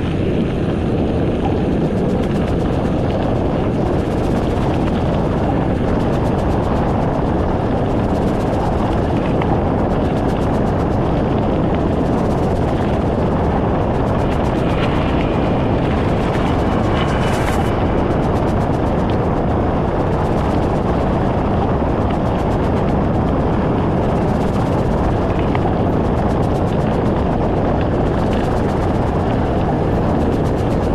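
Steady rush of wind buffeting the action camera's microphone, with the mountain bike's tyres rolling over a gravel dirt road, loud and unbroken throughout.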